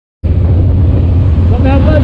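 Honda CB1000R's inline-four engine running steadily as the motorcycle rides along, a low, even drone. A man's voice begins near the end.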